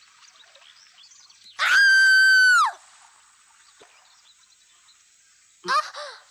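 A loud, high-pitched animal cry lasting about a second, holding one pitch before dropping away at the end, then a shorter cry that rises in pitch near the end.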